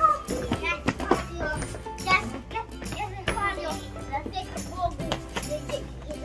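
Children's voices chattering over soft background music with steady held low notes.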